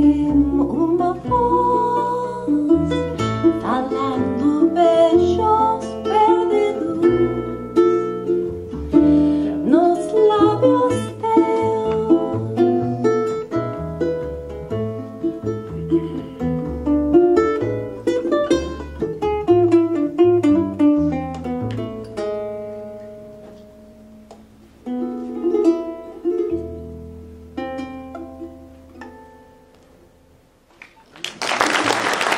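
Ukulele and upright double bass playing an instrumental passage, a plucked melody over a walking bass line. Past the two-thirds mark the bass drops out, a few last phrases follow, and the tune winds down and fades toward its end.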